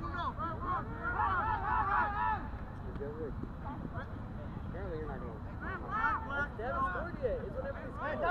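Shouts and calls from players and onlookers across a rugby pitch, scattered and fairly faint, over a steady low rumble.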